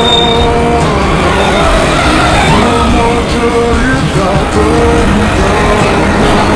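Cars driving slowly in a convoy, their engines and tyres mixed with music playing over them.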